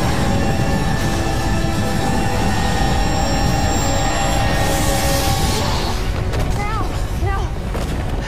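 Dramatic film score with held tones over a continuous low rumble of sound effects, with a brief hissing swell about five seconds in. Near the end, short wavering vocal sounds, like strained cries, come in over the music.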